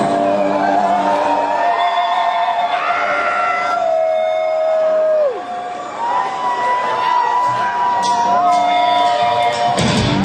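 Electric guitar holding long, wavering notes before the song starts. One note dives steeply in pitch about five seconds in and a higher note takes over a second later, with crowd cheering underneath.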